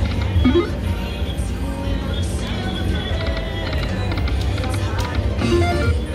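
Dragon Link Golden Gong slot machine playing its electronic spin music and chimes as the reels turn, over a steady low hum and voices.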